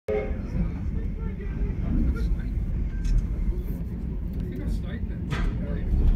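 Low, steady rumble of a passenger train carriage rolling slowly along the tracks, heard from inside the carriage, with a single sharp knock about five seconds in. Faint passenger voices are in the background.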